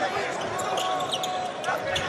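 A basketball being dribbled on a hardwood court, with arena crowd noise.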